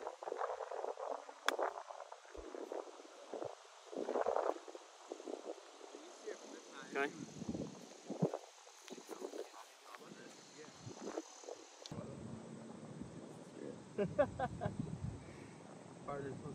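A golf club striking the ball on a short chip shot: one crisp click about a second and a half in, among quiet voices and light breeze. A short laugh comes near the end.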